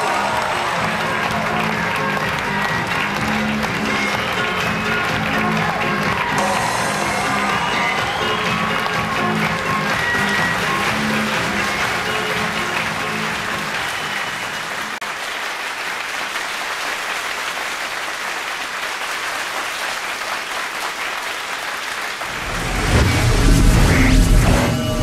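Audience applauding over show music. The music fades about fifteen seconds in, leaving mostly clapping, and a louder, bass-heavy music cue cuts in near the end.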